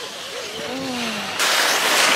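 A sudden rushing noise about one and a half seconds in, growing louder, as the snow tubes start sliding down the tubing run, with air buffeting the microphone. Before it a voice is heard faintly.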